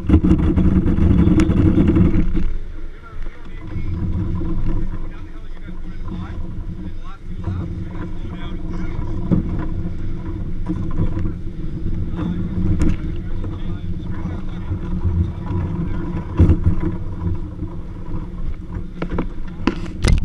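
Racing kart rolling over the paddock pavement as it is pushed by hand: a steady rumble and rattle through the chassis, louder for the first couple of seconds, with occasional short knocks.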